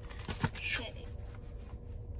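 A stack of Pokémon trading cards being handled and passed from hand to hand: a faint rustle of card stock with a short tap a little under half a second in.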